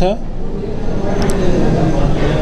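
A man's last spoken syllable, then a steady low rumbling background noise almost as loud as the speech, with a faint click about a second in.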